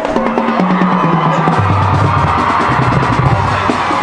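High school marching band playing on the field: the low brass steps down over the first second and a half, then holds a low note beneath sustained upper brass, with drumline percussion ticking steadily throughout.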